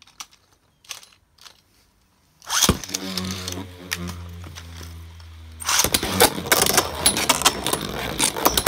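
After a few faint clicks, a Beyblade Burst top is launched into a plastic stadium about two and a half seconds in and spins with a steady whirring hum. Around six seconds in a second top lands and the two clash over and over, with rapid clacking and rattling of the tops hitting each other and the stadium.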